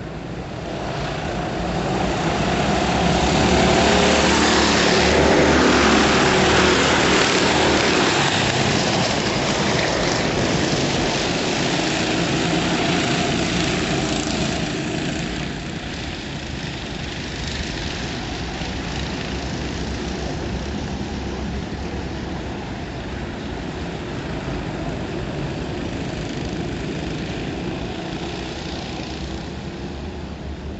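Racing kart engines running on the circuit, rising to their loudest about four to eight seconds in as the karts pass close, their note wavering up and down with the revs through the corners, then carrying on more distantly.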